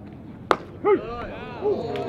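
A single sharp crack of a metal baseball bat meeting a pitched ball about half a second in, the contact that puts the ball in the air for the third out. Voices shout right after it.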